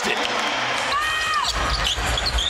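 Basketball arena noise from the crowd, with a brief high squeak about a second in. From about halfway, a basketball is being dribbled on the hardwood court, with low, repeated thuds.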